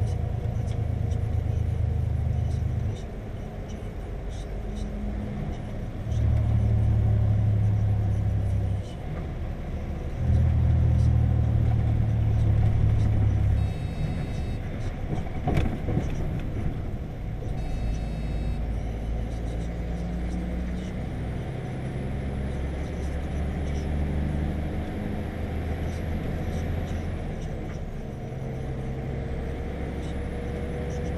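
Heavy-goods lorry's diesel engine rumbling, heard from inside the cab. The rumble rises and falls back in stretches of a few seconds.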